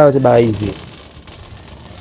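A voice speaking a short word at the start, then faint, even background noise of a large store.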